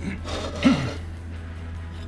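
A short breath and a brief falling vocal grunt from a person about two-thirds of a second in, over a steady low hum.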